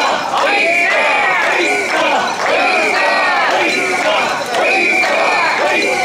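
Crowd of mikoshi bearers chanting the traditional 'wasshoi, wasshoi' in unison as they carry a portable Shinto shrine, many voices shouting in a steady repeating rhythm.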